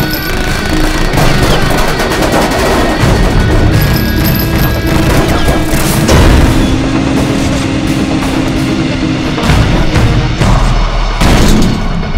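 Film action soundtrack: music playing under repeated gunfire and heavy booms, with the shots coming in quick clusters and a long held note in the middle.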